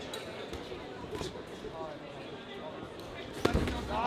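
Voices shouting in a large hall during a boxing bout, with a few light knocks, then a single sharp thud near the end as a boxing glove punch lands.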